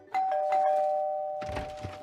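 Two-tone doorbell chime, ding-dong: a higher note and then a lower one a moment later, both ringing on and slowly fading. A few soft knocks come near the end.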